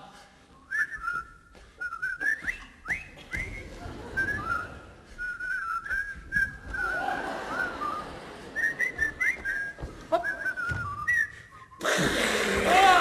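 Whistling in short chirps and quick upward slides, a busy run of little trills that begins about a second in, broken by soft clicks and knocks.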